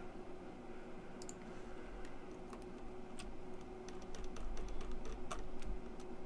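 Computer keyboard and mouse clicking: scattered clicks that bunch into a quick irregular run in the second half, over a steady low hum.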